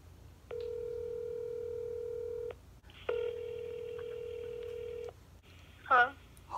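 Phone ringback tone through a smartphone's speaker: two steady tones of about two seconds each with a short gap between them, the outgoing call ringing while it waits to be answered.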